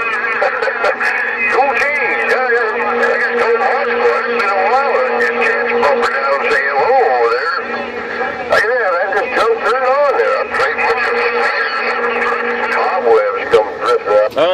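Garbled, warbling voices from other stations coming through a Uniden Grant LT CB radio's speaker on channel 11, with steady whining tones running under the speech.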